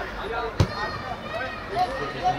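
A football kicked once on a grass pitch: a single sharp thud about half a second in, with faint voices of players and spectators behind it.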